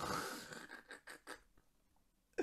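A person's breathy exhale that fades out over about half a second, followed by three short puffs of breath.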